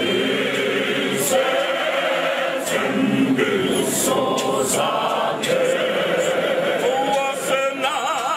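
A church choir of men and women singing a hymn together, many voices blended into one steady, continuous sound with no instruments heard.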